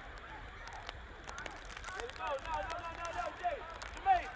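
Distant shouts and calls of footballers on an outdoor pitch, faint over the open-air background, growing busier from about halfway through.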